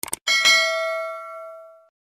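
End-screen notification-bell sound effect: two quick clicks, then a single bell ding that rings out and fades over about a second and a half.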